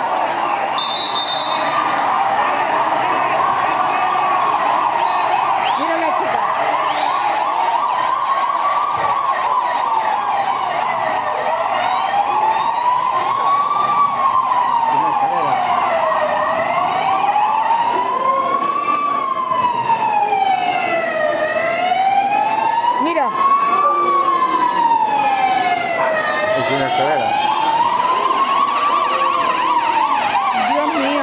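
Emergency vehicle siren sounding a slow wail that rises and falls about every five seconds, with a second siren sounding underneath.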